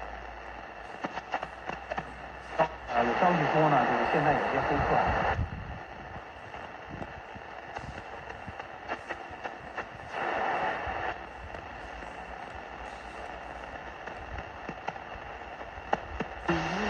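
National Panasonic RF-858D portable radio being tuned on the shortwave band: a steady hiss with crackles of weak reception. A broadcast voice comes through for about two seconds near three seconds in, and briefly again about ten seconds in.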